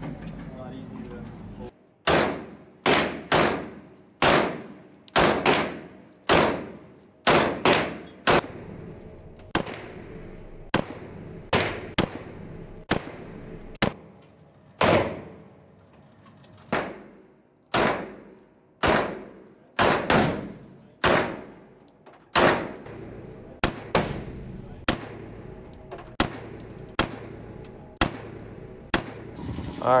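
Pistol shots at an indoor range, fired one after another at about one a second, sometimes closer together. Each is a sharp crack with a short echoing tail off the concrete lane, and some are fainter than others.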